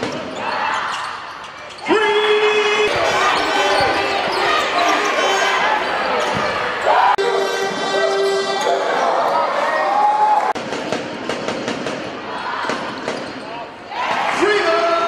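Live game sound on an indoor basketball court: the ball bouncing, shoes squeaking on the hardwood, and voices from players and crowd in a large hall. The sound jumps abruptly several times where one clip is cut to the next.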